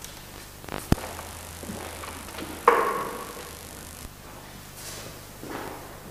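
Handling noise as gear is worked into a carved stone font: a sharp click about a second in, a low hum for a few seconds, then a louder knock a little under three seconds in.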